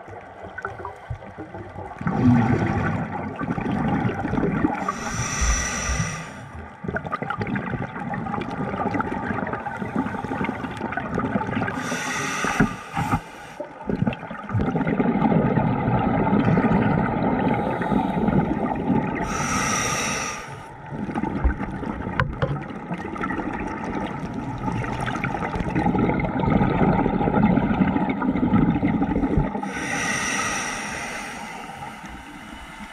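Scuba diver breathing through a regulator underwater. Each breath gives a short hiss on the inhale, then a longer bubbling rumble as the exhaled air escapes, repeating about every seven seconds, four times.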